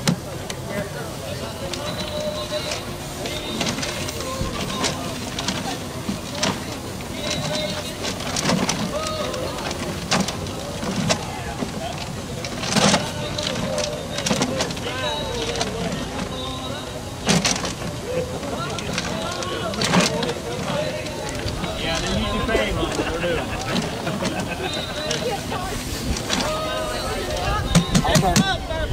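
Background crowd chatter with paper raffle tickets tumbling in a clear acrylic raffle drum as it is turned by hand, with several sharp knocks from the drum.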